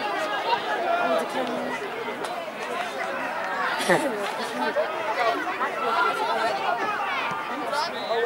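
Many overlapping voices of sideline spectators and players chattering, with a brief louder call about four seconds in.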